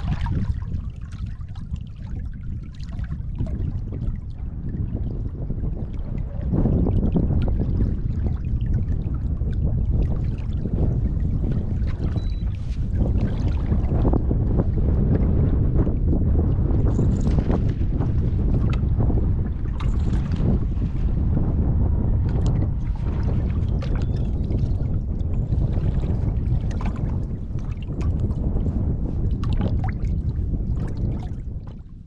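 Wind buffeting the microphone with a steady low rumble, over small waves slapping against a fiberglass bass boat's hull; it gets louder about six seconds in.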